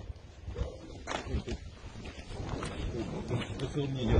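Footsteps crunching over rubble and loose earth, heard as scattered sharp crunches, with low rumbling handling noise from the handheld microphone. A low voice murmurs near the end.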